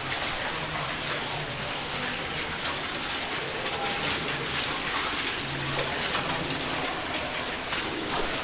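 Steady rushing of a cave stream's running water, echoing in a narrow rock passage.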